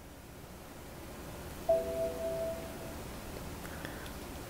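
A short electronic chime, a chord of a few steady tones about a second long starting near the middle, from the Surface Pro tablet's speaker as the drawing app is closed. Otherwise faint room hiss.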